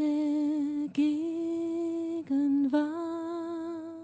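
A woman's voice singing long held notes with vibrato in a slow worship song, over a soft keyboard; the voice breaks briefly about a second in and twice more shortly after two seconds.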